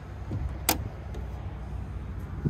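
A single sharp metallic click about two-thirds of a second in, as a stainless flush-mount pull ring on a fibreglass deck hatch is handled, over a low rumble of handling noise.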